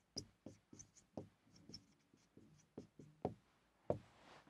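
Felt-tip marker writing on a whiteboard: a quick run of faint, short squeaks and taps as each letter is stroked, the last one the loudest.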